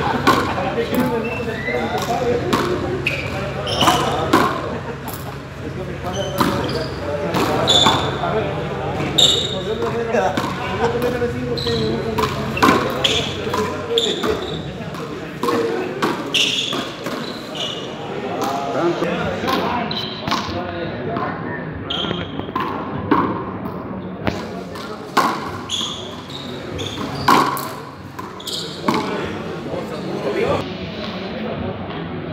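Frontón rally: a rubber ball struck with wooden paletas and rebounding off the court's walls and floor, sharp knocks about every second, over background voices.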